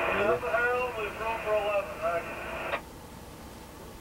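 A voice heard over the train's two-way radio in the locomotive cab, sounding thin and narrow, which cuts off abruptly a little under three seconds in. After it, only the low steady background noise of the moving cab remains.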